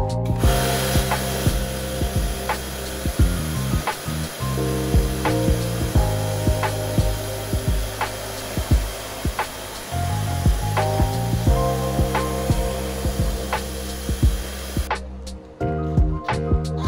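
A pressure-washer jet sprays water onto a car's alloy wheel as a steady hiss. It starts just after the beginning and stops about a second before the end, under background music with a steady beat.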